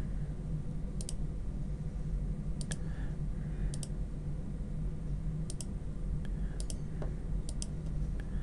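Computer mouse button clicks, about six quick pairs spaced roughly a second apart, over a steady low hum.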